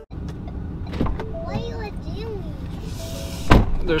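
Steady low rumble inside an SUV's cabin, with a click about a second in and a faint child's voice in the middle. Near the end the driver's door shuts with a sharp thump, the loudest sound, as the driver gets back in.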